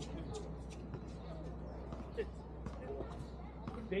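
Basketball game sounds: a ball bouncing on the court now and then amid distant players' voices, over a steady low hum.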